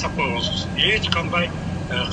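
Speech in a telephone conversation: a person talking over a steady low hum.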